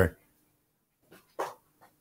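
The end of a man's spoken phrase, then a near-silent pause in his speech with one short, faint sound about one and a half seconds in.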